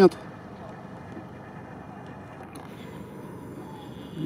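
Faint, steady hum of distant off-road vehicles running through the marsh.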